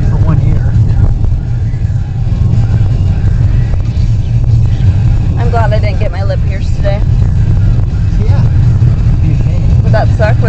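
Steady low rumble of a car's engine and tyres heard from inside the cabin while driving, with a voice briefly over it around the middle.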